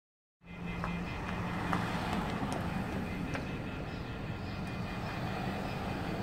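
A steady rumble of a vehicle engine and traffic heard from inside a car, starting about half a second in. Under it runs the faint, steady, high-pitched off-hook warning tone of a telephone left off the hook, with a few light clicks.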